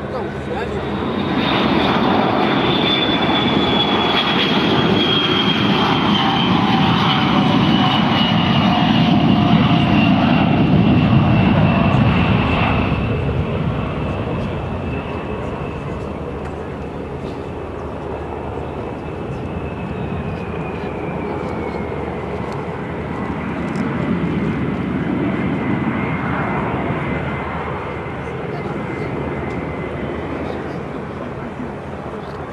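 Beriev Be-200 jet amphibian's two D-436TP turbofan engines at take-off power as it climbs out low overhead. The sound is loudest for the first dozen seconds, with a high engine whine sliding down in pitch as it passes, then drops to a fainter rumble as it banks away.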